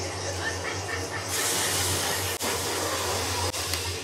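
A steady rushing hiss from the anime episode's soundtrack, growing louder about a second in, over a low steady hum.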